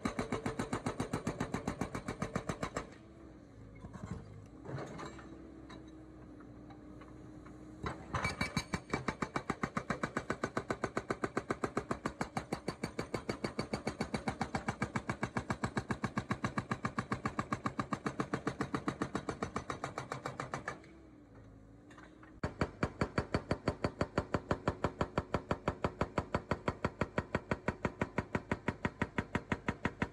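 Excavator-mounted hydraulic breaker (Striker) hammering concrete in rapid, even blows over the excavator's running diesel engine. The hammering stops twice, once for about five seconds early on and once briefly about two-thirds of the way through, leaving only the engine.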